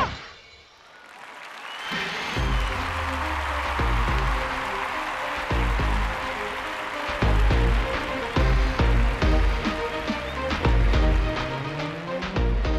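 Audience applauding, starting about two seconds in, over instrumental stage music with a heavy bass beat; a low tone slowly rises near the end.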